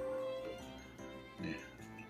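Background music with steady held notes, and a cat meowing once, briefly, about one and a half seconds in.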